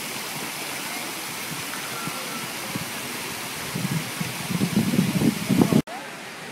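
Fountain jets splashing steadily into a stone basin, an even rushing of falling water. In the last two seconds a louder, uneven low rumble rises over it, and the sound then cuts off abruptly.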